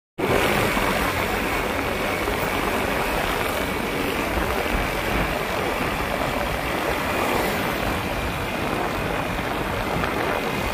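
Steady rushing wind noise on the microphone of a moving motorcycle, with the engine and tyres on wet tarmac running beneath it.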